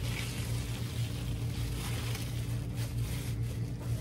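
Steady low room hum with faint rustling of cloth as a bandage strip is tied around an improvised arm splint.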